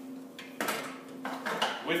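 Clinks and knocks of stainless-steel parts as the vegetable-cutting assembly of an Electrolux TRK food processor is handled and lifted off during disassembly. There are a few separate metallic knocks: one about half a second in and a cluster just past a second.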